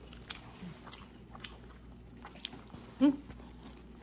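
A person chewing food with scattered soft wet mouth clicks and smacks. About three seconds in comes a short, questioning "hm?", the loudest sound.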